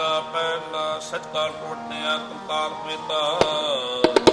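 Harmoniums holding steady sustained chords between sung lines of Sikh kirtan, with a single sharp tabla stroke near the end.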